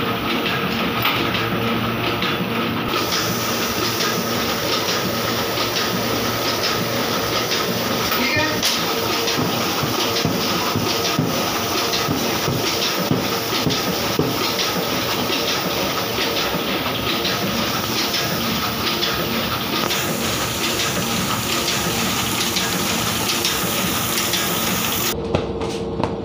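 Two-colour offset printing press running steadily: a dense, continuous mechanical clatter with many quick clicks over a constant hum.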